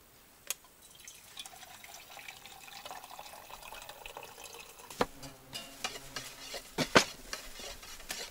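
Liquid poured from a small stainless-steel teapot into a metal mug, a soft splashing stream for a few seconds. It is followed by several sharp metallic clinks, the loudest about seven seconds in.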